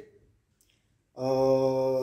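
A man's drawn-out hesitation sound, a single vowel held at one steady pitch for about a second, starting a little past the middle.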